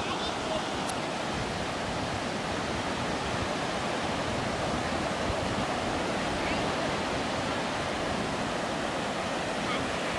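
Low surf washing steadily onto a sandy Gulf of Mexico beach: a continuous, even hiss of small breaking waves.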